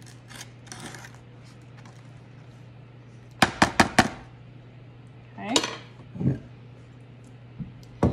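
A spoon tapped four times in quick succession against an aluminium foil pan, about three and a half seconds in, knocking off pudding. A faint steady low hum lies underneath.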